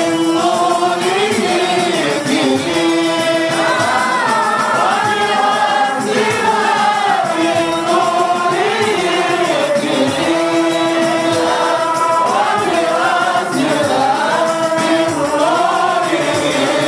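Group of men singing a qasida together through microphones, an Arabic devotional melody in maqam Sikah, with long held notes that bend and slide between pitches.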